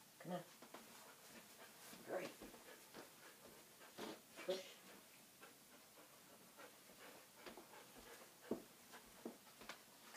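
Near silence with a few faint, short soft knocks and ticks in the second half.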